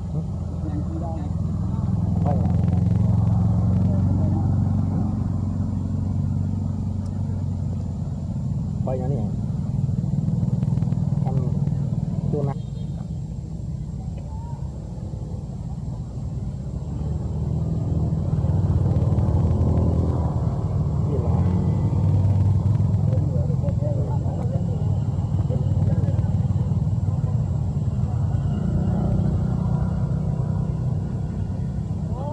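Steady low engine rumble of passing road traffic, likely motorbikes, swelling louder twice as vehicles go by, with indistinct voices mixed in.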